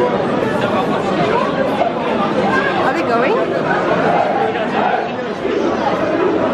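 Crowd chatter: many people talking at once in a large indoor hall, a steady babble of overlapping voices.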